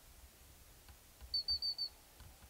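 A bird calling: four quick, high chirps in an even run about one and a half seconds in, over a faint low rumble.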